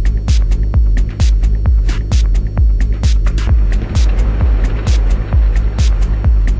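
Techno DJ mix: a steady four-on-the-floor kick drum at about two beats a second over a constant deep bass, with short hi-hat ticks between the kicks. A hiss of noise swells up around the middle and fades near the end.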